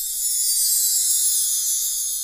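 A steady high-pitched hiss with a shimmering, slightly buzzy edge, set in with no low notes, as a sound effect or part of the credits soundtrack.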